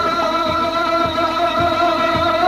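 Kashmiri Sufi folk music between sung lines: a held, slightly wavering melodic line over regular low drum beats about twice a second.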